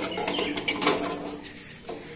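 Metal sieve screen and grinding chamber of a small mill being handled: a quick run of light metallic clicks and rattles in the first second, with a steady low note running for about a second under them.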